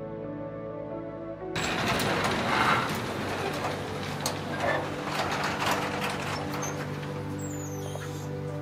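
Soft sustained ambient music, joined about a second and a half in by steady rain falling and dripping, heard under the music.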